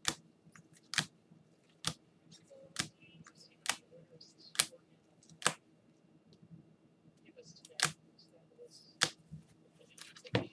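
Sharp plastic clicks, roughly one a second with a pause about two-thirds of the way through: hard plastic trading-card holders knocking together as the cased cards are handled one by one.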